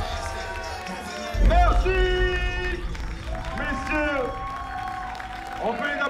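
Music with a sung vocal line, its held and gliding notes over a bass beat that comes in about one and a half seconds in.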